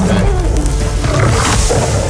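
Movie soundtrack of a man-versus-lion fight: a lion roaring, with a noisy surge about halfway through, over music.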